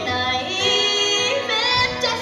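A woman singing solo, holding sustained notes with vibrato and sliding between pitches.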